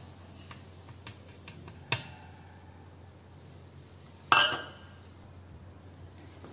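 Stainless steel bowl and steel mixer jar clinking as semolina is tipped in: light scattered ticks, a sharp clink about two seconds in, and a louder ringing metal clatter just past four seconds.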